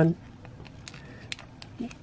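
Small plastic action-figure parts clicking and ticking as a figure's hand is forced over a shield's fixed handle: a few faint, sharp ticks in the second half, one louder than the rest.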